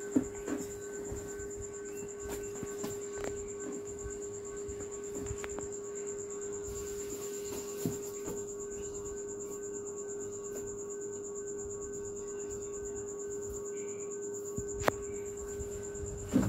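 A steady high-pitched whine over a lower steady hum, with a few faint clicks and knocks.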